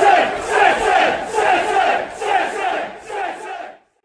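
A large football crowd chanting together in a loud, rhythmic pulse of about two beats a second, dying away near the end and then stopping.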